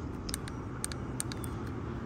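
Steady low background noise with a few faint light clicks scattered through it.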